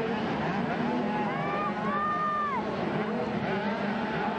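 Several 80cc two-stroke motocross bikes racing, their engines revving up and down in high-pitched whines. One rev climbs about a second in, holds, and falls away at around two and a half seconds.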